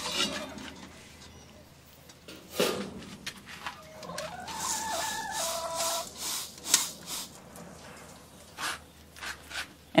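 Metal clinks, knocks and scraping of a galvanised hanging chicken feeder being handled as it is topped up with chicken crumble, with a hen clucking from about four to six seconds in.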